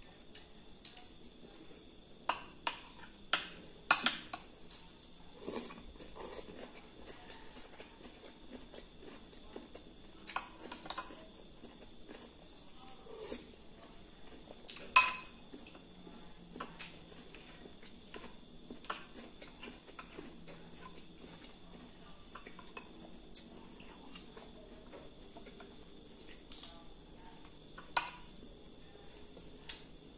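A metal spoon clinks and scrapes against ceramic bowls of rice and noodles at irregular moments, with the sharpest clink about halfway through. A steady high-pitched drone runs underneath.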